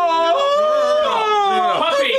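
A man's long, drawn-out wailing cry of "No", held for nearly two seconds with the pitch wavering and sliding down, breaking off briefly near the end before the wail resumes.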